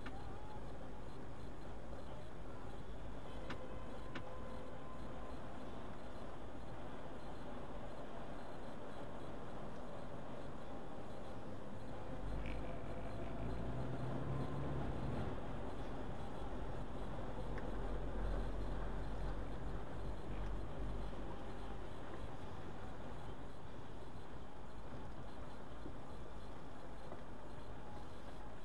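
Steady road and traffic noise heard from inside a moving car's cabin, with a deeper low rumble for several seconds around the middle of the stretch.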